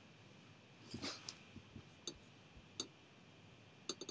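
A handful of faint, irregular clicks and soft knocks over quiet room hiss.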